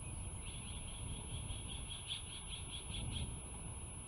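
Bald eagle calling: a run of short, high piping chirps, about five a second for roughly three seconds, strongest in the middle.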